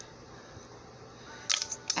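Low, steady room hiss with one soft click at the start. A woman's voice comes in near the end.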